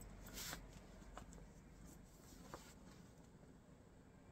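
Near silence, with a faint crinkle of a clear plastic zippered bag being handled about half a second in and a few soft clicks after.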